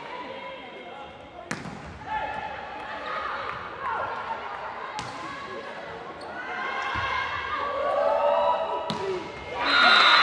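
A volleyball being struck three times during a rally, sharp smacks a few seconds apart, with voices of players and spectators echoing in the hall that grow louder toward the end.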